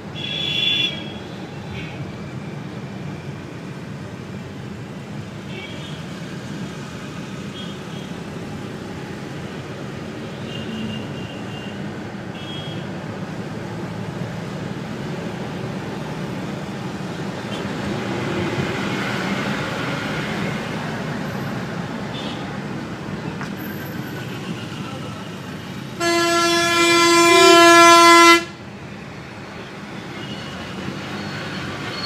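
Dense road traffic heard from inside a taxi: steady engine and road noise with scattered short horn toots from nearby vehicles. Near the end, one long, loud horn blast lasting about two seconds.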